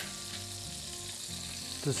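Breaded pork chop frying in hot oil, a steady sizzle.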